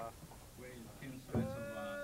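A voice chanting one long held note, starting about a second and a half in, after a stretch of faint background voices.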